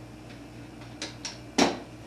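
The plastic screw-top lid of a large protein powder tub being twisted open: a couple of faint clicks, then one short, louder knock or scrape about one and a half seconds in.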